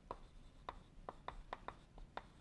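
Chalk writing on a blackboard: a string of faint, irregular taps and scratches as letters are written.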